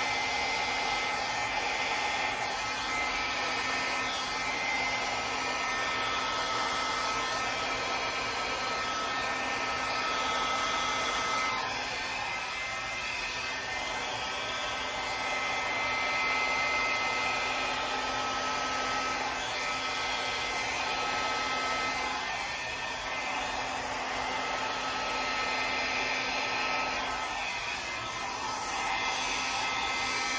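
Hand-held hair dryer running steadily, a constant rush of air with a steady whine, blowing wet acrylic paint across a canvas. The loudness dips slightly a few times as the dryer is moved.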